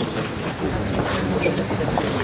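Steady hubbub of a meeting room as a group of people walk in, with faint scattered clicks and footfalls.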